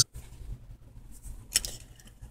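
Quiet room tone with a faint low hum and a single short click about one and a half seconds in.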